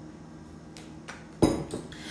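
A bottle of apple cider vinegar set down on a tabletop: one sharp knock with a short ring about a second and a half in, after a few faint clicks.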